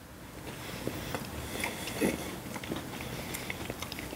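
Two people biting into and chewing frosted Pop-Tart toaster pastry: faint, scattered crunching and mouth noises.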